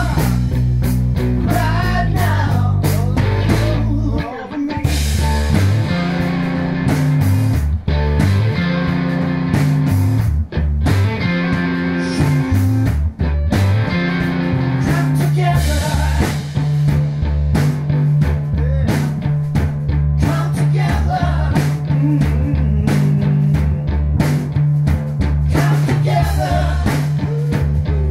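Live rock band of electric guitar, electric bass and drum kit playing loudly, with singing at times.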